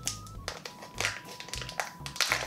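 Small plastic wrapper of a Kinder Joy toy crinkling in short, uneven bursts as it is worked open by hand.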